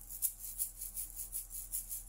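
Soft background music in a pause of the voice: a few low notes held steadily under a quick, even, high-pitched rustling pulse at about five beats a second.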